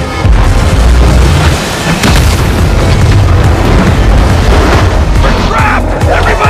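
Film soundtrack with music over deep, booming low rumble, loud throughout.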